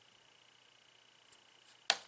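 Near-silent room tone, then a single sharp click near the end as a small vape drip tip is set down on a hard tabletop.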